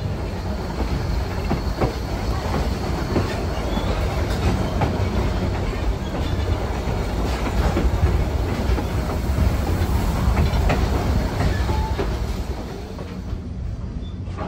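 Passenger coach of a moving excursion train, heard from aboard: a steady rumble of steel wheels on the track, with scattered clicks from the rail joints.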